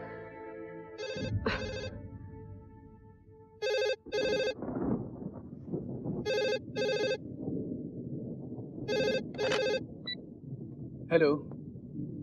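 Cordless landline telephone ringing with an electronic double ring: four pairs of short rings, one pair about every two and a half seconds, the first pair fainter than the rest.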